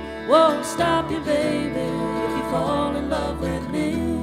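Bluegrass band playing live on fiddle, acoustic guitars, mandolin and upright bass, with a lead line that slides up in pitch a moment in.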